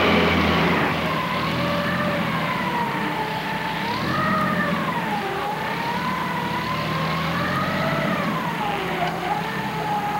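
A vehicle engine running steadily under a high tone that slowly rises and falls, wavering up and down every couple of seconds.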